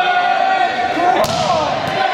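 A volleyball is bounced once hard on a wooden gym floor about a second in, a sharp smack. It sounds over held shouts and voices from the players and bench.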